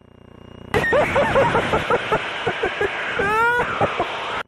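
A man laughing delightedly over an aircraft headset intercom, in a run of short repeated bursts. The voice-activated mic opens sharply about three-quarters of a second in, bringing cockpit noise with it; before that the channel is nearly silent.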